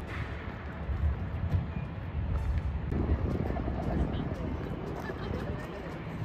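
Wind buffeting an outdoor camera microphone, a low, gusting rumble that rises and falls unevenly.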